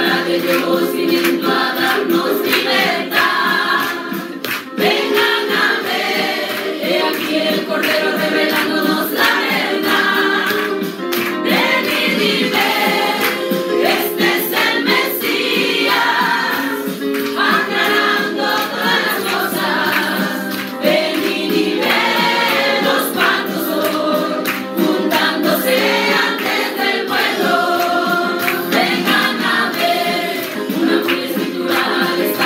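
A group of women singing a hymn together into handheld microphones, continuous and loud.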